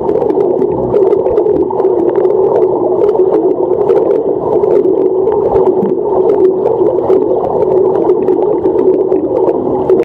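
Pool water heard underwater through a submerged camera: a steady, muffled rush with many small clicks and pops from a front-crawl swimmer's kicking and bubbles.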